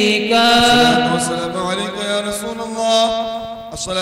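A man chanting a devotional Arabic salam through a microphone, drawing out long held notes that rise and fall, over a steady low drone.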